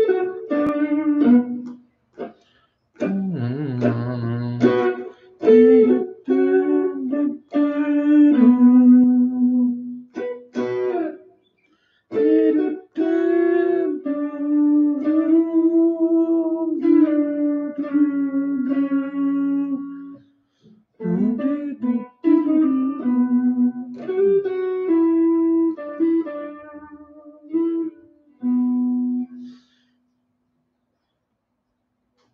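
PRS Silver Sky electric guitar playing an improvised single-note lead line, phrased like singing: short melodic phrases with bends and vibrato, separated by brief pauses, ending on a held note.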